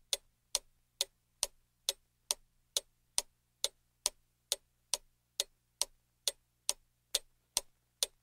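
Clock ticking steadily, a little over two sharp ticks a second.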